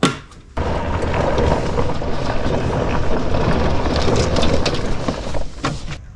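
John Deere Gator utility vehicle started from a switch on its dash: its motor comes on suddenly about half a second in and runs with a steady, deep rumble for about five seconds before cutting away.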